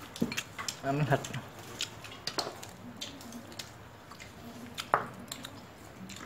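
Chopsticks clicking against stainless steel bowls as food is picked up and dipped: a scatter of light, sharp clicks, one louder near the end.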